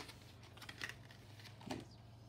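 Clear plastic die packaging being pulled apart and handled, crinkling in a few faint, short rustles over a low steady hum.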